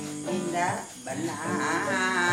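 An elderly woman sings in long, wavering notes while an acoustic guitar is played along with her.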